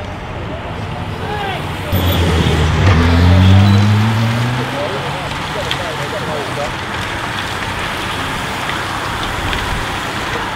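A motorcycle engine passes about two seconds in, its pitch rising as it accelerates, then fades after a couple of seconds. Under it runs the steady rush of a bunch of racing bicycles going by.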